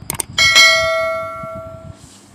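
Subscribe-button animation sound effect: two quick mouse clicks, then a single notification-bell chime that rings out and fades away over about a second and a half.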